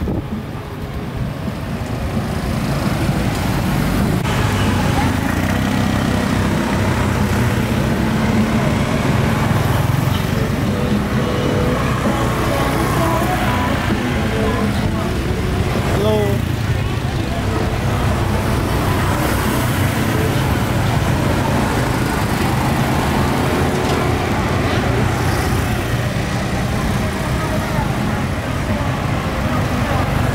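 Steady street traffic noise with people talking.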